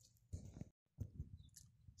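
Near silence with a few low thumps of handling noise on the phone's microphone. They are split by a moment of dead silence where the recording cuts.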